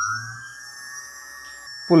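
Small brushless outrunner motor driven by an electronic speed controller, whining at a steady pitch. The pitch rises smoothly in the first half-second as the speed is turned up to full, then holds.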